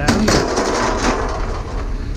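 A sharp bang followed by about a second of dense rattling clatter that dies away, over a steady low vehicle rumble.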